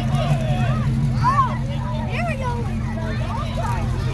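Crowd of spectators talking, with children's voices calling out over one another, above a steady low hum from a slow-moving vehicle engine.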